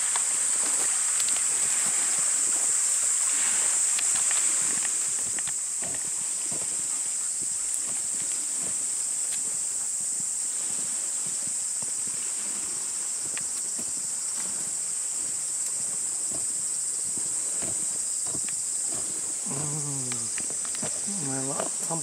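A steady, high-pitched chorus of summer cicadas. Under it, for the first four or five seconds, the rush of a stream, which then falls away. A voice comes in near the end.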